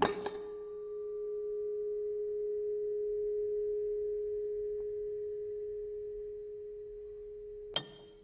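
A metal car part rings with one steady, pure tone after a knock. The tone swells and slowly fades over several seconds, then is cut off by sharp metallic clinks near the end.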